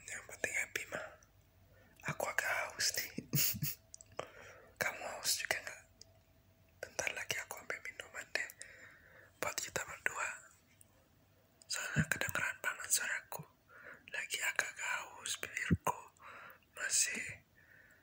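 A man whispering close to the microphone in short phrases, with a few sharp clicks between them.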